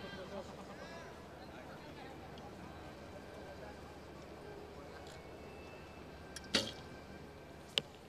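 Hoyt Velos recurve bow shooting an arrow: a light click, then a sharp snap of the bowstring at release. About a second later comes a short, sharp crack of the arrow striking the target.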